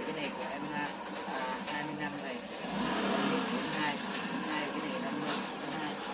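Voices talking, over a steady background of vehicle engine noise.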